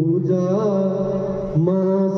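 Chant-like vocal music: a melodic voice holding and bending long notes over a steady low drone, with a brief dip about a second and a half in.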